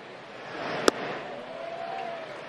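A pitched baseball smacking into the catcher's mitt, one sharp crack about a second in, over the steady murmur of a ballpark crowd.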